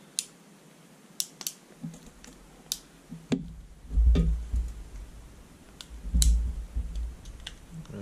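Ratchet crimping pliers clicking as they are worked to crimp an electrical terminal onto a thin wire: a string of sharp, irregular clicks, with two heavier low thuds about four and six seconds in.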